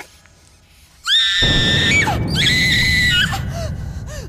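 A woman screaming, two long, very high-pitched shrieks about a second in, each trailing off with a falling pitch, over a loud low rumble.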